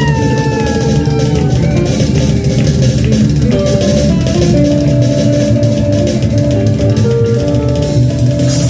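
Live rock band playing: electric guitars over a steady drum beat. A held note slowly falls in pitch in the first second and a half, then the guitars ring on with sustained notes.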